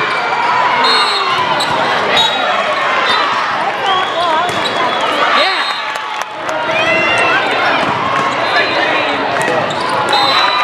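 Volleyball play in a busy hall: the ball struck and bouncing several times, with many overlapping voices of players and spectators calling out.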